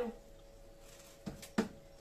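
Two short knocks about a third of a second apart, as chunks of courgette cut off by hand with a knife drop into the steel bowl of a food processor, over a faint steady hum.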